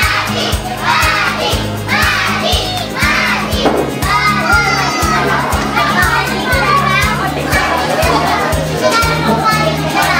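A group of children shouting and calling out together over background music with a steady bass beat.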